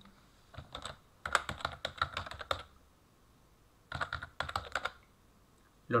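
Typing on a computer keyboard: three short runs of quick keystrokes with brief pauses between them.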